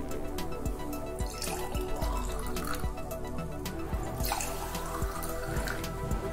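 Water poured from a plastic mug into a small glass jar in two spells, the pitch of the pour rising as the jar fills, over steady background music.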